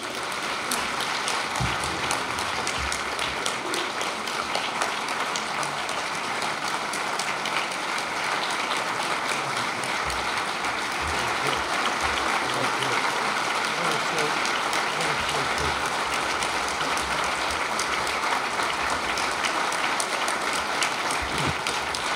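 An audience applauding: a steady, sustained round of clapping that starts right away and holds at an even level for about twenty seconds.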